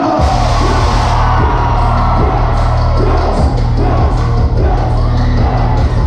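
Live concert music played loud over an arena PA, with heavy sustained bass and a singing voice, and crowd yells mixed in. The bass dips out briefly about halfway through.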